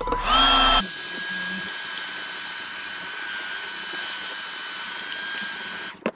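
Ryobi cordless heat gun running, blowing hot air to shrink heat-shrink tubing over a wire: a brief rising whine as it starts, then about a second in a steady loud rush of air with a thin fan whine, cutting off suddenly near the end.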